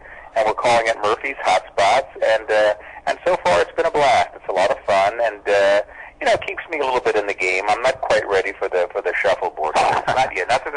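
Continuous speech from a radio interview, with no other sound.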